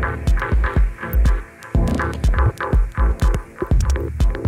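Minimal techno DJ mix: a steady kick drum about twice a second, with short ticking percussion and a buzzy midrange pattern over it.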